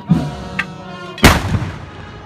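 A single musket shot fired as a blank salvo: one sharp, loud bang a little over a second in, with a short echoing tail. Band music plays underneath.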